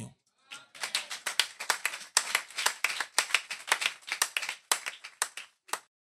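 Hands clapping, a small group applauding with irregular, sharp claps at about four or five a second. The claps stop shortly before the end.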